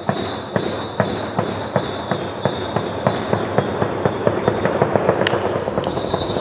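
Sharp rhythmic beats or claps, about three a second, over ballpark background noise, with a steady high-pitched tone that drops out about four seconds in and returns near the end.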